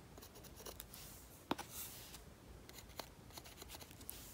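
Faint scratching of a fine paintbrush dabbing short strokes onto a painted earring piece, with a few light taps, the sharpest about one and a half seconds in.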